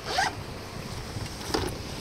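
Small resealable plastic bag being pulled open by its press-seal zip: a short rasp just after the start and another brief one about a second and a half in.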